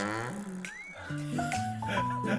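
Edited-in background music: a comic sound effect falling in pitch at the start, a short whistle-like glide that rises and falls, then light, steady plucked notes.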